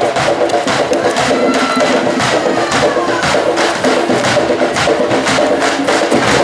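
Candombe drums (tambores) played with hand and stick in a dense, driving rhythm, with sharp stick clicks running through it.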